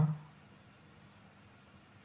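Near silence: a faint steady low hum of background room tone, after a spoken word trails off at the very start.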